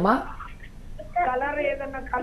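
Speech only: a woman's voice on the call, rising sharply in pitch right at the start, then talking again from just past the middle.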